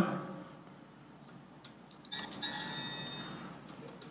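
An electronic chime, like a computer alert sound: two quick bell-like notes about two seconds in, ringing out and fading over about a second and a half.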